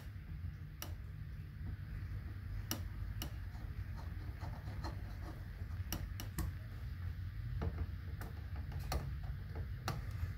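Small screwdriver driving the screws of an outlet wall plate: scattered, irregular light clicks and ticks over a low handling rumble.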